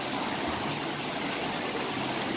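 Steady rush of water running down a water slide and splashing into a shallow pool.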